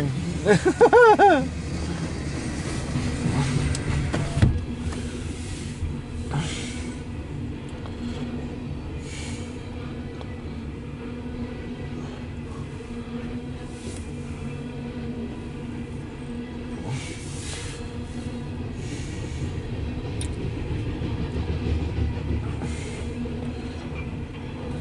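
Loaded coal train of hopper cars rolling past, heard from inside a car: a steady low rumble of wheels on rail with a faint steady hum, and now and then a brief hissing swish.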